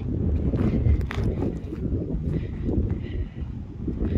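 Wind buffeting a phone's microphone in an uneven low rumble, with footsteps of someone walking on dry grass.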